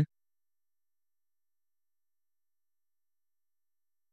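Silence: the audio drops to nothing, with no room tone or background noise.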